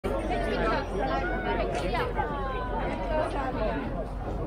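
Several people chattering close by, their voices overlapping.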